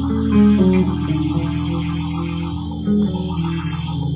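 Live rock band playing, led by electric guitars over bass guitar, with sustained notes.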